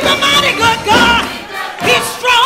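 Gospel choir singing loudly, led by a woman singing short, sliding phrases into a microphone, with the choir's voices behind her.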